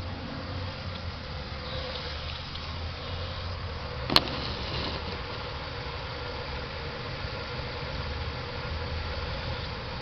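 Buick 3.8 L (3800) V6 idling steadily while Seafoam is drawn in through a vacuum line, with one sharp click about four seconds in.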